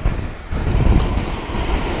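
Surf washing in over the shallows, with wind buffeting the phone's microphone in a low rumble that swells again about half a second in.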